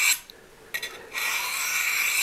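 Steel knife blade scraped along a diamond sharpening rod in sharpening passes: a stroke ends just at the start, a short scrape comes about 0.8 s in, then one long stroke of about a second.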